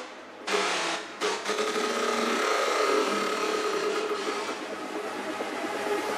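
House music played in a DJ set, in a breakdown: a dense hissing, noisy texture with the bass taken out. It comes in about half a second in and holds, with faint steady tones underneath.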